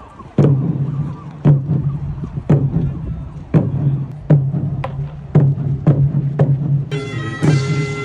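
Korean court procession music: a large drum struck about once a second, each beat ringing on low. About seven seconds in, a shrill, reedy wind instrument joins.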